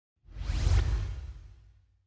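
Outro sound effect for a logo: a single whoosh with a deep low rumble, swelling up about a quarter second in, loudest just under a second in, then fading away over the next second.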